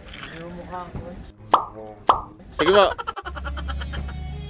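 Mostly a person's voice, with two sharp sudden onsets partway through; a little after three seconds in, it cuts abruptly to a steady low hum with faint, evenly repeating ticks.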